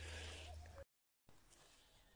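Near silence: faint background noise that drops out to dead silence about a second in, at an edit cut, and comes back even fainter.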